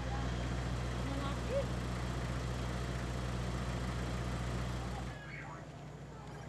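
A motor vehicle's engine idling close by, a steady low hum that cuts off suddenly about five seconds in.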